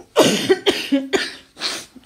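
A woman coughing repeatedly, four or five coughs in quick succession, from a bad cough.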